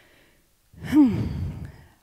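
A woman sighing close to a handheld microphone: one breathy, voiced exhale a little under a second in, falling in pitch and lasting about a second.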